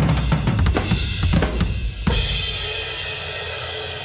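Acoustic drum kit played in a fast, powerful roll during a soundcheck. About halfway through it ends on a single crash cymbal hit that rings on, slowly fading.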